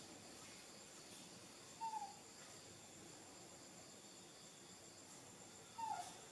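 Two short, falling squeaky calls about four seconds apart, typical of a baby macaque whimpering, over otherwise near silence.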